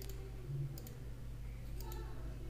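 A few sharp clicks of a computer mouse, two of them close together near the end, over a low steady hum.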